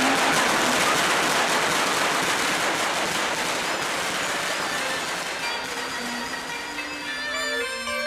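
Applause fading away after a speech, while instrumental music with long, held notes comes in over roughly the second half.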